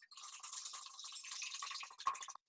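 Hand whisk beating a thin mix of egg whites, sugar and milk in a glass bowl: a fast, steady rattle and scrape of the whisk against the glass.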